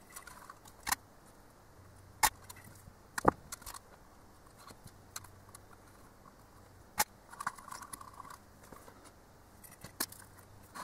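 Hands handling wires and plastic cable ties inside a plastic enclosure: four sharp clicks, the third the loudest, with soft rustling of the wires in between.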